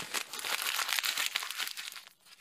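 Sound effect of many small tablets spilling out and scattering: a dense crackling clatter of tiny clicks that thins out and fades near the end.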